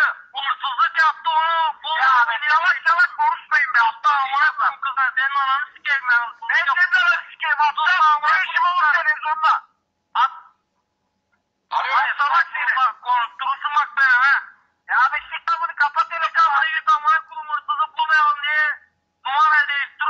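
Speech heard over a telephone line, thin-sounding and without bass, running almost without pause except for a break of about a second and a half midway.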